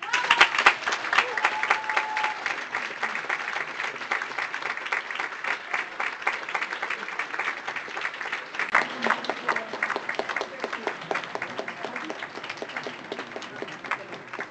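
Opera-house audience applauding right after the orchestra stops, the clapping slowly thinning and growing quieter. A held shout rises above it in the first couple of seconds.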